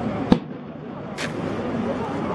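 Two sharp clacks of a rifle squad's drill movements made in unison, one about a third of a second in and one just over a second in, over a steady crowd murmur.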